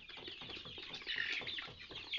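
A flock of young Kuroiler chickens calling in their pen, with a louder run of high calls about a second in over many small clicks and scuffles.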